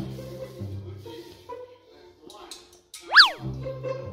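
A cartoon-style comedy sound effect about three seconds in: a quick whistle-like glide that shoots up in pitch and drops straight back down, over faint background music.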